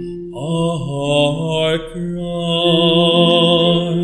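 A male cantor singing a verse of the responsorial psalm solo, entering with a rising glide and holding long notes with vibrato over steady sustained accompanying chords.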